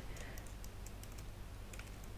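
Computer keyboard typing: a few faint, quick keystrokes.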